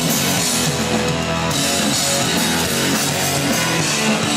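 A rock band playing live through a big outdoor PA: electric guitars and drums, loud and continuous.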